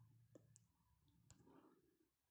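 Near silence: room tone with a few faint, sharp clicks scattered through it.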